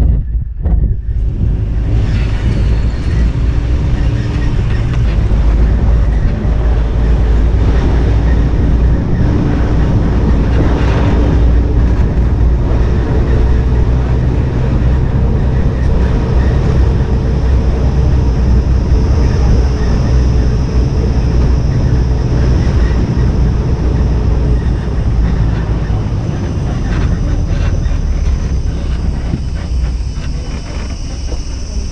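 Steady low rumble of a vehicle moving along a road, with wind buffeting the microphone and a faint steady hum above it.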